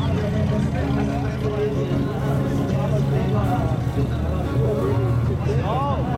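Classic car engine idling steadily, with people talking around it.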